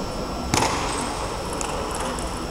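Table tennis ball struck hard with a sharp click about half a second in, followed by a few fainter ticks of the ball, over the hum of a large hall.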